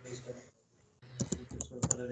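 Typing on a computer keyboard: a quick run of key clicks starting about a second in.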